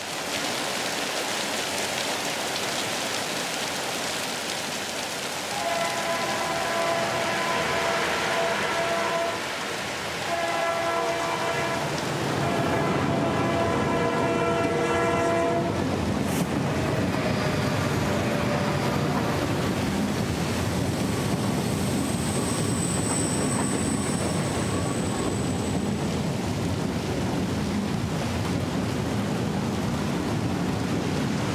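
Film soundtrack: a steady rushing noise, then two long blasts of a train horn, the first about six seconds in and the second about ten seconds in, followed by the louder rumble of a train running past to the end, with a faint high whine about two-thirds of the way through.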